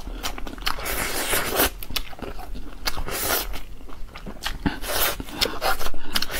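Close-miked chewing and biting, with irregular sharp wet clicks and crunches, as a person eats braised rib meat.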